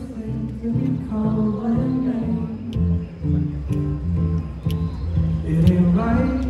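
Acoustic guitar strumming chords in a steady rhythm as the introduction to a song, played live on stage through the microphones, with a few sharp percussive clicks.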